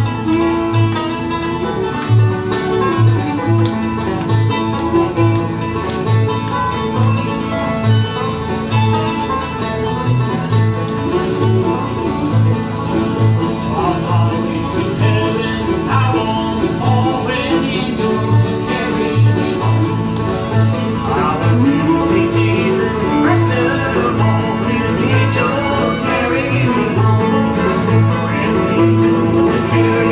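A small acoustic bluegrass group playing: several acoustic guitars strummed over a steady, even bass-note beat, with a fiddle playing sliding lines above them.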